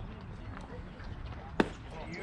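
A baseball smacking into the catcher's mitt on a pitch, one sharp pop about one and a half seconds in, over faint steady outdoor background noise.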